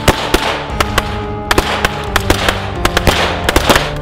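Volley of gunshots from several guns firing at once, about twenty sharp shots in quick, irregular succession, over a sustained music score.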